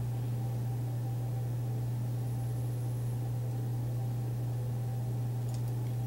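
Steady low hum of room noise with no speech, unchanging throughout.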